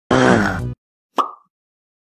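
Cartoon sound effects of an animated logo intro: a short pitched, many-toned sound lasting just over half a second, then a single quick pop a little over a second in.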